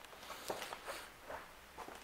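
Faint footsteps, with a few soft ticks spread through the quiet.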